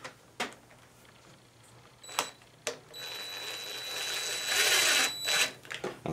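Cordless drill-driver driving a coarse-thread screw into the plastic air-cleaner housing of a small mower engine: a few light clicks, then the driver's motor runs for about two seconds, getting louder before it stops.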